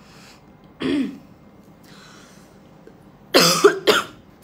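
A woman clearing her throat and coughing: a short throat sound about a second in, then a louder double cough near the end.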